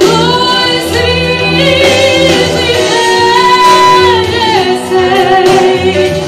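A woman singing a pop song live into a microphone over instrumental accompaniment with a steady bass. She holds one long note in the middle, then her pitch drops.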